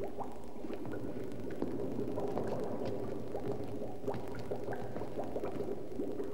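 Liquid bubbling in a vat, small irregular pops over a low steady hum.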